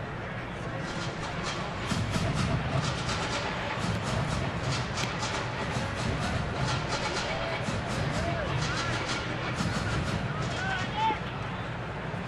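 Baseball stadium crowd noise with music playing over the ballpark speakers, a run of sharp beats through most of it, and individual fans calling out in the last few seconds.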